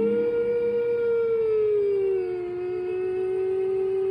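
A single long hummed note from the song's closing melody. It slides down a step about two seconds in and is held steady on the lower pitch.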